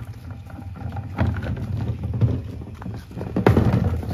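Plastic wheelie bin pulled on its wheels along a concrete slab path, its wheels rumbling and clacking over the joints between the slabs, louder near the end as it comes close.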